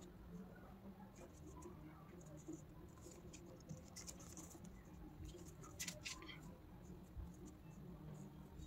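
Very quiet handling of paper: fingertips pressing and smoothing a glued paper heart onto a folded card, with faint scratches and a few small clicks around the middle, over a low steady hum.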